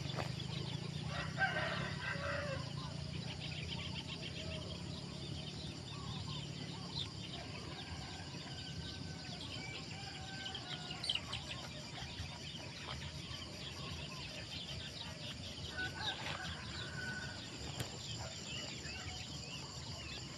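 A rooster crowing about a second in, over a steady outdoor background of many small high chirps and a low hum; a shorter call follows near the end.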